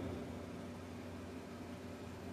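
Faint, steady hum and hiss of background noise with no distinct events.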